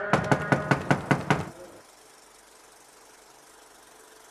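A hand knocking quickly on a front door with a metal panel: about eight rapid knocks in a second and a half, then they stop.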